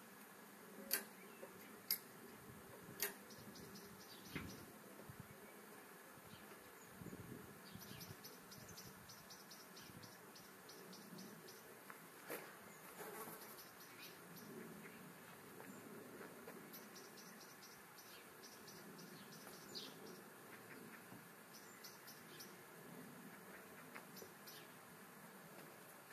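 Quiet outdoor ambience with a few sharp clicks in the first three seconds and, later, several short runs of rapid high ticking.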